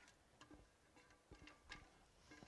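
Near silence with a few faint ticks of a spatula scraping the inside of a metal saucepan.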